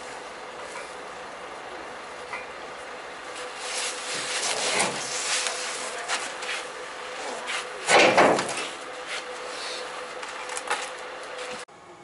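Scraping, rubbing and knocking of hand work on a truck trailer's wheel as its nuts are tightened, over a faint steady hum, with a louder rush of scraping about eight seconds in. The sound cuts off abruptly just before the end.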